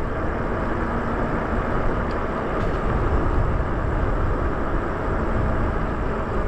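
Steady rushing wind on the microphone and tyre noise on pavement from a Lyric Graffiti e-bike riding along at speed, mostly a low rumble with no distinct motor whine.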